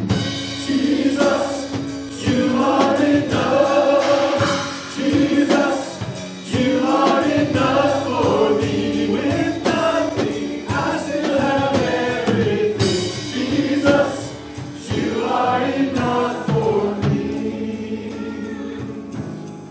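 Live contemporary worship music: a man and a woman singing a praise song over a band of keyboard, electric bass guitar and drum kit.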